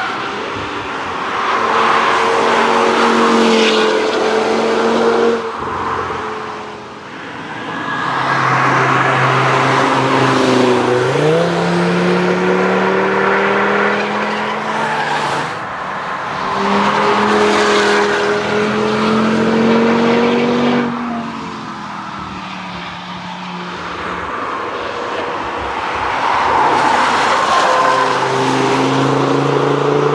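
The camouflaged 2015 Audi RS3 test car's turbocharged five-cylinder engine, driven hard past the camera several times in a row. Its engine note rises and falls with the throttle and the gear changes.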